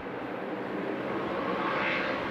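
A pack of ARCA stock cars at racing speed, their V8 engines blending into one steady drone that swells slightly near the end.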